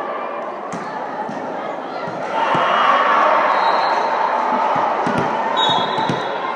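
Echoing gymnasium din during a volleyball match: crowd voices and chatter, with scattered thuds of balls hitting hands and the hardwood floor. The crowd noise swells a couple of seconds in, and a short high whistle sounds near the end.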